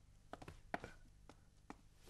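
Near silence: room tone with about half a dozen faint, short taps.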